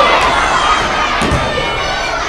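A large crowd of schoolchildren shouting and cheering together, loudest at the start.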